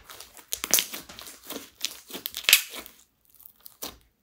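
Clear slime mixed with crushed eyeshadow being kneaded, squeezed and pressed by hand: an irregular run of short sticky clicks and crackles, loudest about two and a half seconds in and thinning out near the end.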